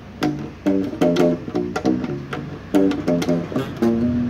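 Kala U-Bass acoustic bass ukulele, solid spruce top with mahogany back and sides, plucked unplugged: a quick run of short bass notes, about four a second, each sharply attacked and fading fast. It is heard acoustically, not through an amplifier.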